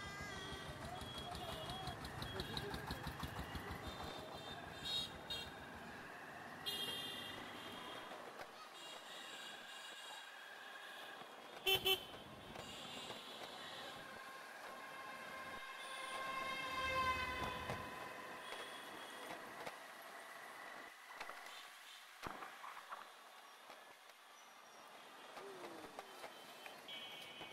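Busy street traffic heard from a moving motorbike: horns honking again and again from the surrounding vehicles over a low engine rumble. One short, loud blast about twelve seconds in is the loudest sound.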